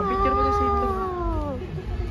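A long, drawn-out "wow" in a high voice, held for about a second and a half and falling in pitch at the end.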